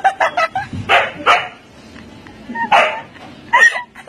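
Siberian husky barking and yipping in short bursts: a quick run of barks at the start, two more about a second in, then others near three seconds and just before the end.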